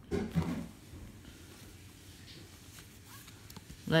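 An iPhone X case being handled and worked onto the phone. A short rustle of handling noise in the first half-second, then faint scattered clicks and rubbing.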